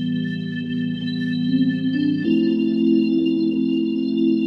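Background music of sustained, organ-like keyboard chords with no beat; the chord changes a little past halfway through.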